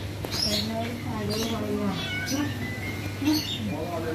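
A flock of budgerigars chirping and chattering, with short high chirps and a thin whistle, over lower wavering calls and a steady low hum.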